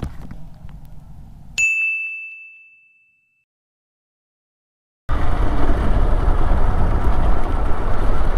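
A single bright ding sound effect rings out and fades over about a second and a half, followed by two seconds of dead silence. Then the noise of a Yamaha R15 motorcycle being ridden, engine and wind rush together, cuts in loud and runs on steadily.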